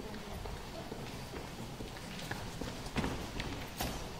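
Footsteps of a person walking away: a few spaced, separate steps over quiet room tone, the loudest about three seconds in and just before the end.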